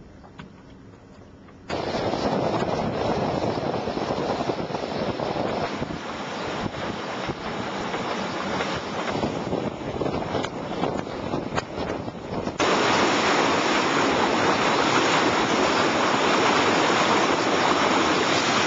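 Wind rushing over the microphone and sea water surging and breaking along the hull of a Class40 racing yacht driving hard through rough seas. The noise comes in abruptly after a quieter first couple of seconds and gets louder again about halfway through, with a few sharp knocks in between.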